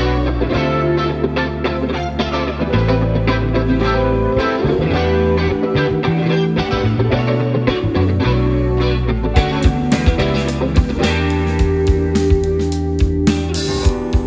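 Live indie pop band playing an instrumental passage: electric guitar, bass guitar and keyboard over held bass notes. About nine seconds in, the drum kit comes in with sharp hits and cymbals.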